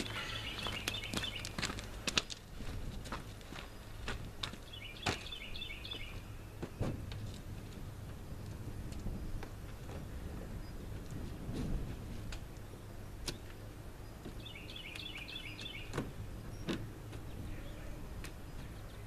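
Outdoor ambience: a bird chirping in short quick runs three times, over a steady low wind rumble on the microphone, with scattered knocks and footsteps on gravel as a wooden bench is moved and set down beside the truck.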